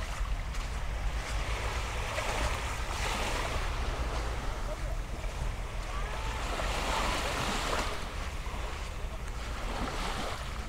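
Small waves lapping and washing up the sand at the water's edge, with a steady low rumble of wind on the microphone.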